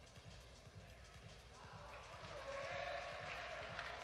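Faint gymnastics-hall ambience: a low murmur of distant voices that grows a little louder about halfway through.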